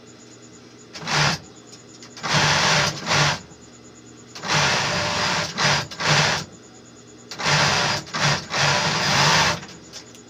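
Industrial overlock sewing machine running in four short runs of about half a second to two seconds each, stopping and starting sharply between them as fabric is stitched.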